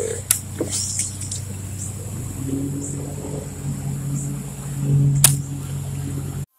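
A fishing reel being wound in after a cast, a steady low whirr that comes in about two seconds in and grows stronger, with a sharp click near the start and another near the end.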